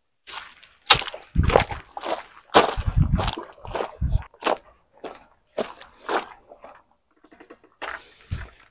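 Footsteps crunching on a gravel path, about two steps a second, loudest in the first few seconds and fading as the walker moves away.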